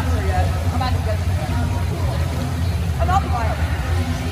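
Busy indoor swimming-pool ambience: a steady low hum with scattered voices calling out across the hall, loudest about three seconds in.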